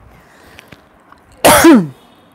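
A woman sneezing once, about one and a half seconds in: a sudden noisy burst with a falling voiced tail, lasting about half a second.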